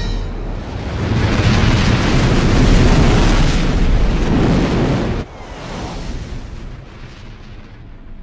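Sound effect of the entry capsule plunging into the atmosphere: a loud, low rushing noise that swells about a second in, then drops sharply about five seconds in and trails on more quietly.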